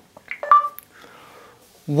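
LG G3's Google voice search sounding its short electronic listening tone about half a second in, the sign that the "OK Google" hotword has been heard and the phone is ready for a spoken question.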